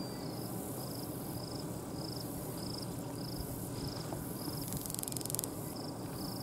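An insect calling in short, evenly spaced trilled chirps, a little under two a second, over steady low background noise. About five seconds in, a brief louder high buzz joins it.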